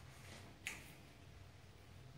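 Near silence: room tone, broken once by a single short, sharp click about two-thirds of a second in.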